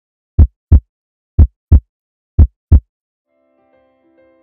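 Heartbeat sound effect: three double thumps (lub-dub) about a second apart, low and loud. Soft sustained music notes come in faintly near the end.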